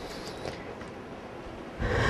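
A pause in a talk: faint steady hiss, then near the end a man's short, loud breath drawn in close to the microphone.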